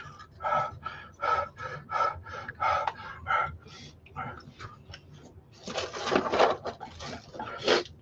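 A man panting in quick, short breaths, about three a second, then blowing out several long, hard breaths near the end, to cope with the burn of an extremely hot sauce.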